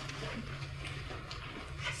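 Quiet room tone in a meeting hall: a steady low hum with a few faint, scattered taps.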